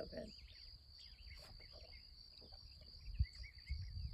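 Quiet outdoor ambience: faint, wavering bird chirps over a steady high-pitched hum, with a low rumble of wind underneath.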